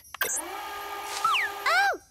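Cartoon fast-forward sound effect on a magic crystal ball: a steady electric whir for about a second and a half, with a falling whistle near the end.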